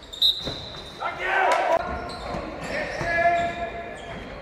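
Basketball game sounds echoing in a sports hall: the ball bouncing on the wooden court, a sharp sneaker squeak just after the start, and players' voices calling out.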